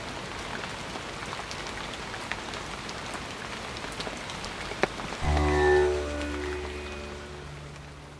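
Rain falling on leaves and wet pavement: a steady patter with scattered sharp drop clicks. About five seconds in, music cuts in suddenly, a low drone with plucked string notes sliding downward, and it slowly fades.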